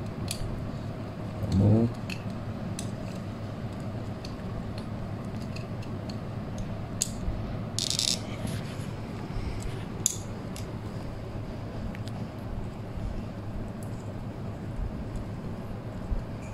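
Scattered small clicks and ticks, with a brief scrape about eight seconds in, from wires being handled and fitted into a small screw terminal connector on a ceiling fan motor's leads, over a faint steady low hum.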